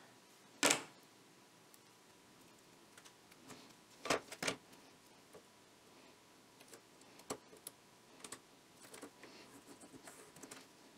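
Sparse knocks and ticks of hands handling a perforated electrostatic speaker panel on a wooden workbench and pressing copper foil tape onto its frame. There is a sharp knock under a second in, a pair of knocks around four seconds in, another about seven seconds in and lighter ticks near the end.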